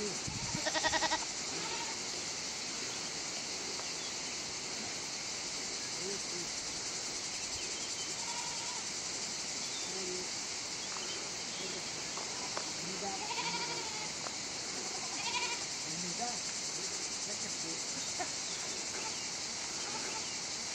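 A herd of miniature goats bleating now and then, in short calls, the loudest about a second in. Under the calls runs a steady high hiss.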